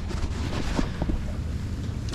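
Wind buffeting the microphone, a steady low rumble, with a few faint light knocks.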